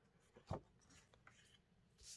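Faint rustle of a sheet of scrapbooking paper being handled and slid aside across a table, with one short soft brush about half a second in and lighter rustling after.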